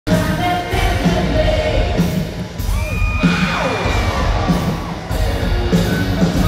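A live rock band with vocals playing through a stadium PA, heard from within the crowd, with a steady driving beat and a long sustained, gliding note in the middle.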